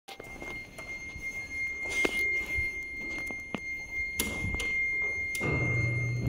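Scattered knocks and thunks as someone steps into a freight elevator car with a metal-mesh floor, over a faint steady high tone. Near the end a low steady hum from the elevator's machinery starts up.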